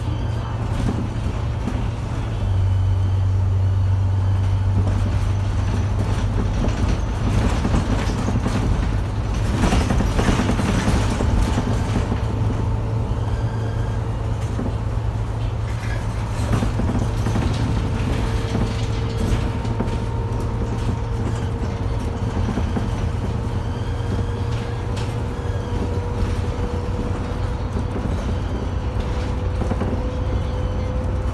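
Cabin noise inside a moving MAN Lion's City bus: a steady low engine drone with road noise, a louder stretch of noise about ten seconds in, and a faint whine that rises slowly in pitch over the second half.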